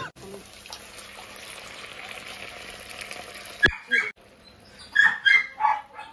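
Blended chilli-tomato sauce sizzling as it hits hot oil in a wok: a steady hiss that cuts off abruptly about three and a half seconds in. A few short pitched calls follow near the end.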